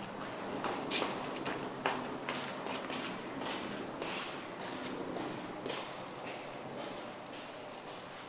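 Footsteps of a person walking across a carpeted floor, a string of short soft taps that settles into an even pace of just under two steps a second.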